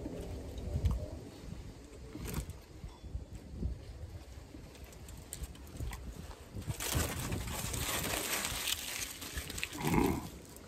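A man chewing a mouthful of burger, with low wind rumble on the microphone, then a long breathy exhale through pursed lips lasting a couple of seconds near the end.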